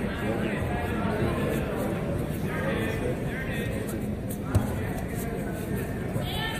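Indistinct voices and crowd chatter echoing in a large gym hall, with a single short thump about four and a half seconds in.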